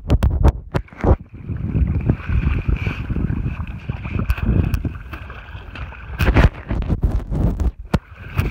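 Wind buffeting the phone's microphone on choppy open water, with several knocks and rubs from the phone being handled, a cluster in the first second and more near the end.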